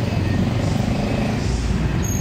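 Steady street traffic noise, a continuous low rumble of vehicle engines passing on a city road.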